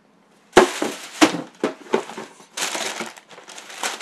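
Packaging crinkling and rustling as it is handled, a string of sharp crackles starting about half a second in.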